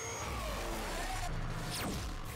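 Cartoon battle soundtrack: a steady low rumble under music, with a quick swooping sound effect near the end.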